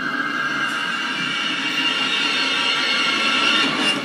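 Sustained, steady high chord-like drone with a hissy edge from a horror TV episode's soundtrack playing through computer speakers, held for the whole stretch after a short pitch glide leads into it.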